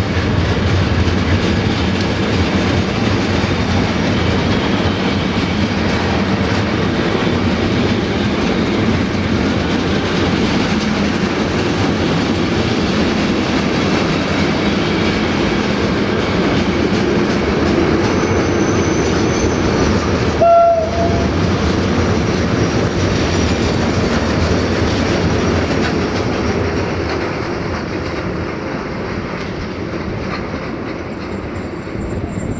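Container freight train's wagons rolling past on the track beside the platform: a steady rumble of wheels on rail that eases off in the last few seconds as the final wagon goes by. A brief, sharp pitched tone sounds about two-thirds of the way through.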